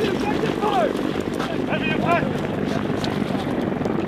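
Helicopter running steadily, a loud constant rotor and engine drone, with a couple of brief shouted words over it.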